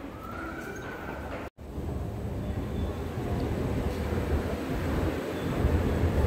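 Steady low rumbling ambience of an underground MRT station and its escalator, with a brief dropout about one and a half seconds in, then growing gradually louder.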